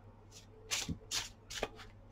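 A deck of tarot cards being shuffled by hand: several short, crisp rustles of the cards sliding against each other.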